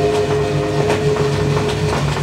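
Orchestral recording played from a 78 rpm shellac disc: a held chord dies away near the end, over the disc's steady surface crackle and low rumble.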